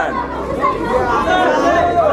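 Voices talking over one another: a chatter of overlapping speech.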